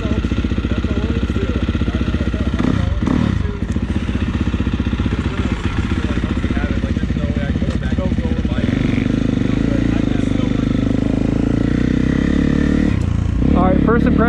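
2019 Husqvarna FC350's single-cylinder four-stroke engine running at idle, then pulling away at low speed; its sound grows fuller and a little louder about eight seconds in and holds steady.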